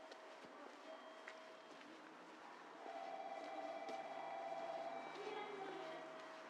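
Faint ambience on an empty railway platform, with a few short soft calls and a warbling tone that swells through the middle seconds.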